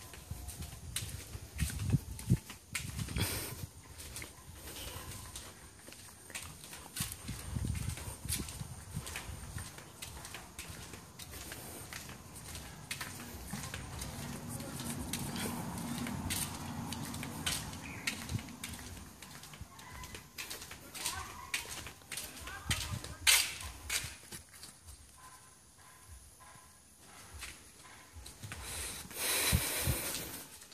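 Irregular knocks, clicks and rustles from a handheld phone being carried around, with faint voices in the background and a louder murmur around the middle.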